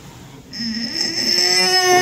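A woman in labour straining to push with her mouth closed: one long groan through the closed mouth, steady in pitch, starting about half a second in.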